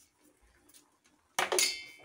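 Near silence, then about one and a half seconds in a single sharp clink of steel cookware that rings briefly with several high tones.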